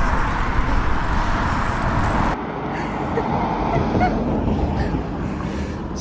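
Outdoor road noise with traffic and wind rumbling on the phone microphone, dropping a little about two seconds in, with a few faint short calls in the second half.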